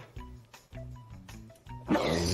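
Soft background music, then just before the end a man's loud, drawn-out burp starts.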